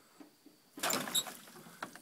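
Frog gig thrust at a bullfrog on the bank: a sudden rushing scuffle about a second in that dies away within about half a second, with a few light knocks before it and one near the end.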